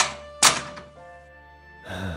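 A door closing, heard as two sharp thunks about half a second apart, the second louder, over quiet background music.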